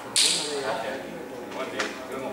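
Indistinct voices in a large hall. Just after the start a sudden sharp swish cuts in and fades within about half a second, and a short click follows near the end.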